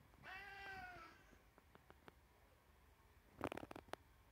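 A cat meowing once, a short call with a falling pitch, about a quarter second in; near the end, a quick cluster of sharp clicks and knocks.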